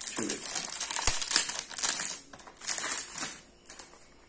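Clear plastic wrapping being pulled and crinkled off a perfume box in quick bursts of crinkling, which die down near the end.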